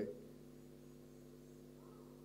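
A pause in a man's speech: his last word fades out at the very start, then only a faint steady hum of several low tones held level.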